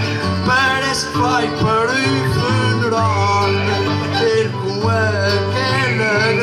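Instrumental interlude of plucked strings: an acoustic guitar playing chords under a picked melody on Portuguese-style guitars, with the chords changing about every second.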